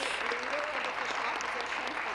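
Members of a legislative chamber applauding: steady clapping from many hands at a moderate level.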